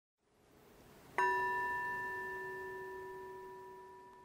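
A single bell strike about a second in, ringing on with several clear overtones and slowly fading away.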